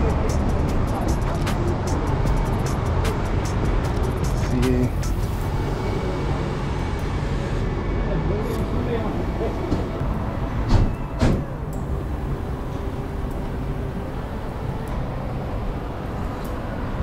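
Busy street traffic, cars and buses running past in a steady low rumble, with two short knocks about eleven seconds in.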